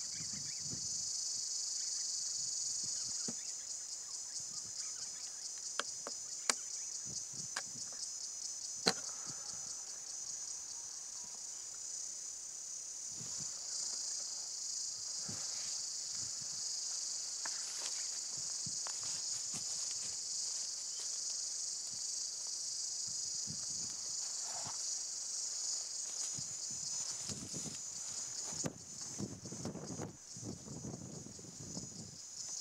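A steady, high-pitched chorus of insects trilling, with a few sharp clicks about a third of the way through.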